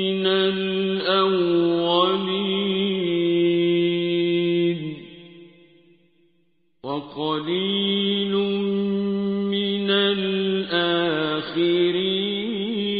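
A man's voice chanting the Qur'an in the slow, ornamented mujawwad style. He holds a long drawn-out note that fades away about five seconds in. After a short silence he starts a new phrase with sliding ornaments.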